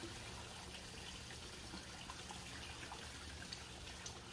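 Faint, steady trickle and splash of water running into a fish pond from its inflow.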